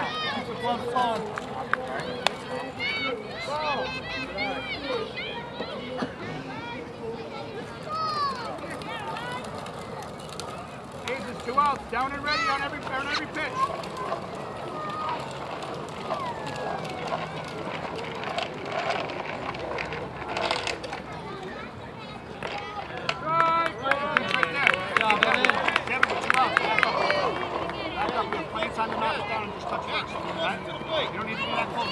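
Spectators' voices chattering and calling out around a baseball field, busiest and loudest about three quarters of the way through, with a few sharp knocks along the way.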